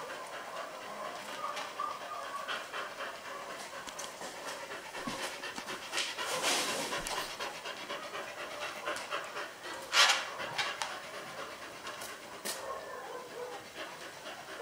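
Dog panting rapidly with its mouth open, a quick even rhythm of breaths, with a brief louder noise about ten seconds in.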